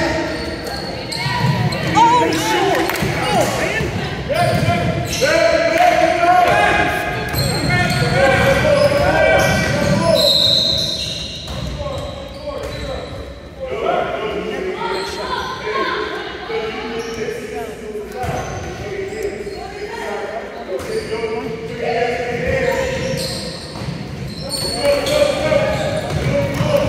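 Basketballs bouncing on a hardwood gym floor during a youth game, with players and spectators calling out over it, all echoing in a large hall.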